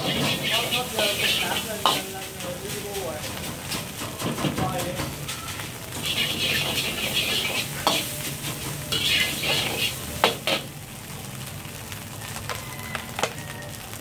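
Rice sizzling in a carbon-steel wok over a high-powered jet burner as it is stir-fried: the sizzle surges in bursts each time the wok is tossed and the rice is turned, while the steel ladle scrapes the wok and clanks against it a few times, near 2, 8 and 10 seconds.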